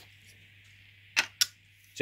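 Two short handling clicks about a fifth of a second apart, a bit over a second in, over a faint steady hum.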